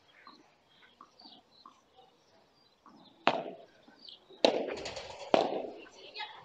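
Padel rackets striking the ball in a rally: three sharp pocks, the first about three seconds in and the next two about a second apart, with a quick rattle of smaller knocks, ball bounces and glass-wall hits, between the last two.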